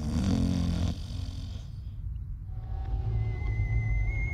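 A man snoring for the first second or two, then fading. About three seconds in, a steady high electronic tone comes in.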